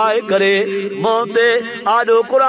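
A man chanting in a melodic, wavering sing-song voice, in short phrases over a steady sustained drone.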